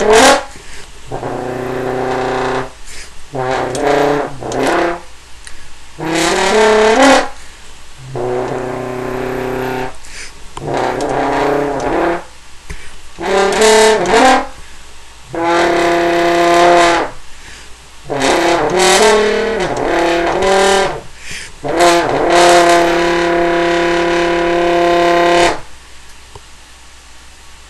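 Conn single French horn in F, an Elkhart-made horn that the owner takes for a 1921 Director 14D, played in a series of short phrases of held notes with brief breathing gaps between them. The last long note stops sharply just before the end.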